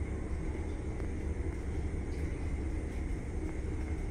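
Steady low hum and rumble inside a Kone elevator car with its doors closed, with a faint steady high tone over it.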